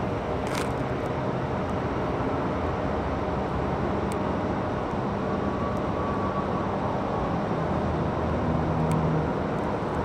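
Steady background noise of road traffic, with a few faint clicks.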